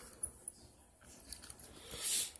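Faint handling noise: a few light clicks as a stainless steel smartwatch and its link band are turned over in the hand.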